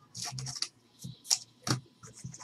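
Trading cards being slid and flicked through the hand one after another: a brief papery rustle, then a few sharp card-stock snaps in the second half.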